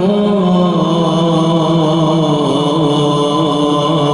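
Chanted Quranic recitation in congregational prayer: a drawn-out vowel held for several seconds, its pitch moving in slow, small steps.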